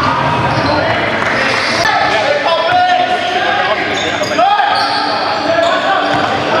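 Basketball game sounds in a large gymnasium: a ball bouncing on the hardwood floor and players' indistinct voices, echoing around the hall.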